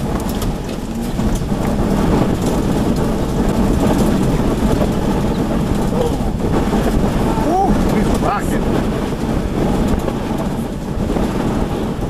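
Strong tornadic wind, gusting to about 76 mph, with rain buffeting a storm-chasing vehicle, heard from inside the cab as a steady, heavy rushing noise. A few brief rising whistles sound near the middle.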